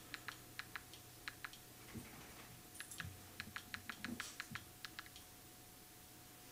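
Buttons on a TV remote being pressed over and over, a string of faint quick clicks that stops about a second before the end.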